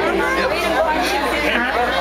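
People talking, several voices overlapping in conversation.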